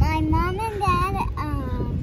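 A young girl singing a few drawn-out, wavering notes that rise and fall in pitch, with wind rumbling on the microphone underneath.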